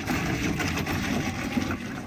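Hard plastic wheels of a Little Tikes Cozy Coupe ride-on toy car rolling over loose gravel as it is pushed along, a steady crunching rumble.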